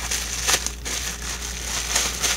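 Plastic bubble wrap crinkling and crackling as it is handled and pulled open, with a few sharper crackles among the rustling.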